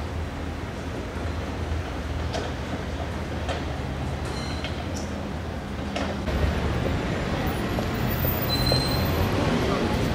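City street ambience: a steady low traffic rumble with a few sharp clicks, growing louder about six seconds in.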